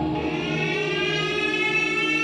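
A siren-like tone used as a transition effect in a hip-hop DJ mix, slowly climbing in pitch from just after the start.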